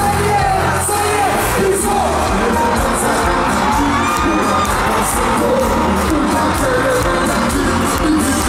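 Live kompa band playing a song with a lead singer over bass, keyboards and drums, heard from within the audience, with crowd shouting mixed in.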